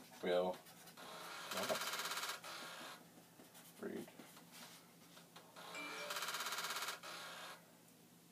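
Commodore 5.25-inch floppy disk drive retrying to initialize a disk: the spindle motor runs and the head mechanism gives a short burst of fast rattling, twice, about four and a half seconds apart. The retries show the drive having trouble reading the disk.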